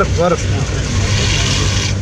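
Steady low hum of a vehicle's engine and road noise heard from inside the cabin while driving, with a rise in hiss a second or so in as the tyres run over the wet road.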